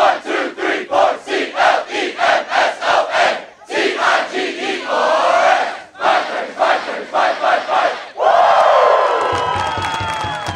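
A crowd of players and fans shouting a rhythmic chant in unison after a count-in, about three shouts a second with a short break in the middle. About eight seconds in it turns into a long cheer, many voices sliding down in pitch.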